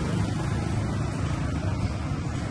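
Steady low rumble of street traffic, mostly motorbikes passing.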